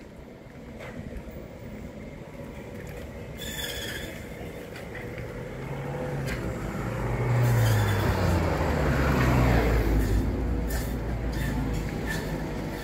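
A car driving past on the street, its engine and tyre rumble growing louder and loudest about eight to ten seconds in, then easing off.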